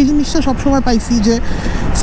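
A man speaking for about the first second and a half over the steady rush of wind and the running engine of a Suzuki Gixxer SF motorcycle cruising at about 60 km/h; after that only the wind and engine noise.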